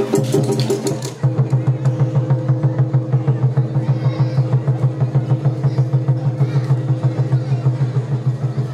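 Japanese festival hayashi music with drums beating a fast, even rhythm of about five beats a second over sustained low tones; the music changes abruptly about a second in.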